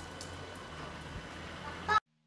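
Steady low hum of outdoor background noise, with a brief higher-pitched sound right at the end.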